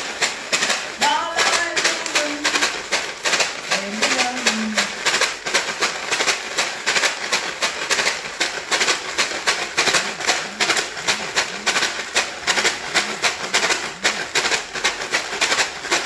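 Water in a plastic water bottle shaken hard by hand in a steady rhythm, about four strokes a second.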